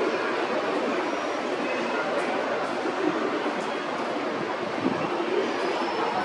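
JR West 681/683 series electric express train pulling out of the station, a steady running rumble of wheels on track with a few faint clicks.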